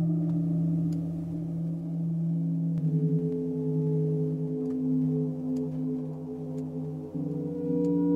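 Bitwig Poly Grid synthesizer patch sounding a sustained chord of steady, gong-like stacked tones, its pitches shifting about three seconds in and again near seven seconds. The root note sits in the D-sharp minor scale, but the overtones, no longer pitch-quantized, fall off the scale and give an eerie, dissonant sound.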